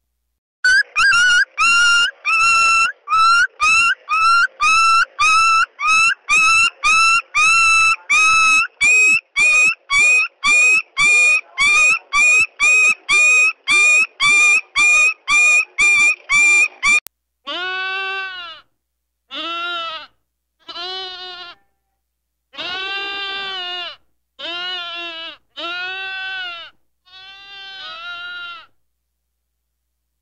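Stock animal sound recordings: first a fast run of short, high-pitched calls, about two a second, for some sixteen seconds, cutting off abruptly. Then seven longer, lower goat bleats, each about a second long and rising then falling in pitch, with short gaps between them.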